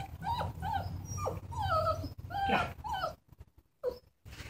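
Belgian Malinois puppy giving a quick string of about eight short, high yelps, several sliding down in pitch, stopping about three seconds in.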